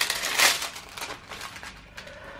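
Clear cellophane packaging crinkling as it is pulled open and handled, loudest about half a second in, then thinning to faint rustles.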